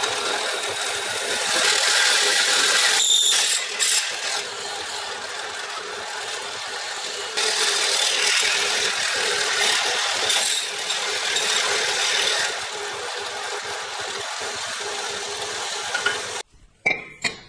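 Bench drill press running, its twist bit cutting into a square metal tube held in a machine vise, a steady grinding noise over the motor hum that gets louder in two spells while the bit bites. A brief high squeal comes about three seconds in.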